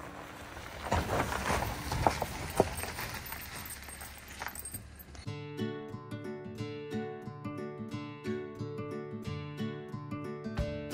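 A lifted Honda Ridgeline rolling up a gravel trail, its tyres crunching and clicking over loose stones. About halfway through this gives way abruptly to acoustic guitar background music.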